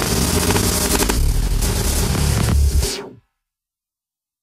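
Electronic trance music playing densely with a hissy, static-like texture, then cutting out abruptly about three seconds in to dead silence. The cut is the track's deliberate 'blackout' break, not an audio fault.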